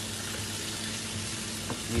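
Red pepper pieces sizzling in hot oil in a saucepan, a steady even hiss, with a low steady hum underneath.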